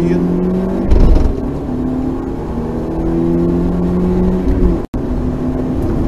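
Rally car engine heard from inside the cabin, accelerating hard along a straight. Its pitch climbs steadily between gear changes: one comes about a second in with a loud thump, and another comes just before five seconds, where the sound cuts out for an instant.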